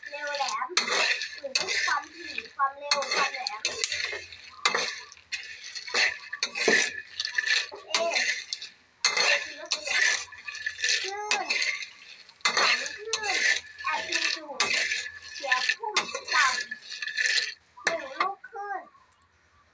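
Kabok seeds (Irvingia wild almonds) rattling and scraping in a metal pan as they are stirred during dry roasting, in repeated strokes about twice a second. Voices speak in the background.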